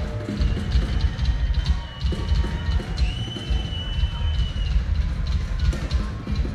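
Live hard-rock concert dominated by fast, dense drum-kit playing: a rapid, continuous stream of low drum hits with cymbal ticks above. A high held tone sounds for about two seconds in the middle.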